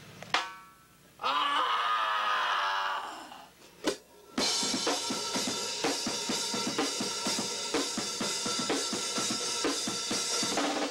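Rock band starting a song: a single drum hit, a sustained wavering tone, another hit, then from about four seconds in the full band playing heavy, distorted rock with a drum kit keeping a steady beat on bass drum, snare and cymbals.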